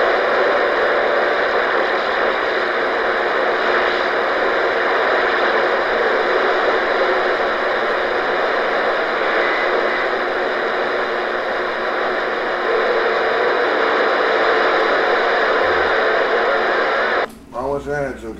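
CB radio receiver hissing with a loud, steady rush of static, with faint voices of distant stations buried in it. This is the sign of rough band conditions. The static cuts off shortly before the end.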